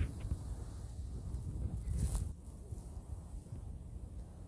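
Outdoor ambience dominated by a low, uneven rumble of wind on the phone microphone, with a single knock about two seconds in.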